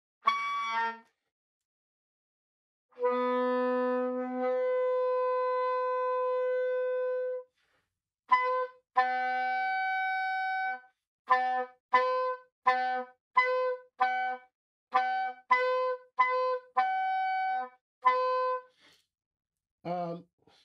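Soprano saxophone playing an overtone-series exercise on the low B-flat fingering. A short note, then a long low note that jumps up an octave about a second and a half in, then a held higher overtone, then a run of about a dozen short tongued notes flipping between two overtones.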